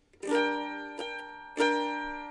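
Chords strummed on a plucked string instrument: one strum a quarter-second in, a lighter stroke about a second in, and another strong strum near the end, each left to ring.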